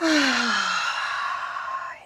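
A woman's long exhale through the mouth, a sigh: a voiced tone falling in pitch over the first second under a breathy rush of air that fades out after about two seconds.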